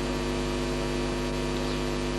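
Steady electrical mains hum with a stack of even overtones and a light hiss, from the microphone and sound system.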